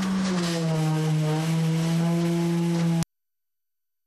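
Construction machinery droning steadily at one pitch, dropping slightly in pitch about a third of a second in. The sound cuts off abruptly about three seconds in.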